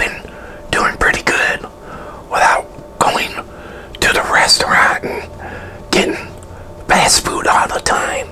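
A man whispering in short phrases with brief pauses between them.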